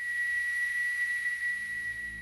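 A steady, high-pitched whistle-like tone holding one pitch over a faint hiss, used as a sound-design effect. It eases off slightly near the end.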